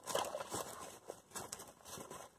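Faint, irregular rustling and scuffing: handling noise of waders and clothing rubbing close to the phone's microphone while a caught fish is lifted.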